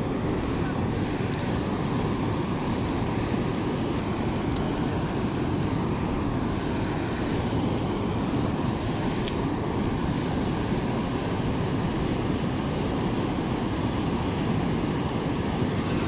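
Steady, unbroken roar of river water pouring through a dam spillway and churning below it.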